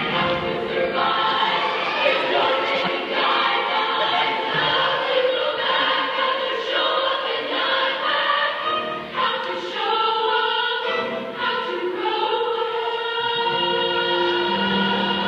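A group of women singing a pop song together on stage, heard from the audience seats.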